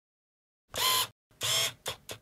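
Sound effects for an animated title card: two noisy, shutter-like swishes about half a second apart, then two shorter, softer ones near the end.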